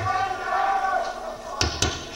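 Two heavy thumps in quick succession, about a fifth of a second apart, near the end, with voices underneath.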